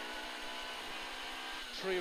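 The 1440cc 16-valve engine of a rally Mini heard from inside the cabin, running at steady revs with an even, unchanging note over road noise. A co-driver's voice comes in near the end.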